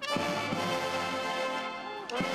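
Military band playing: the brass comes in suddenly with a loud chord that is held for about two seconds, with drum strokes at its start.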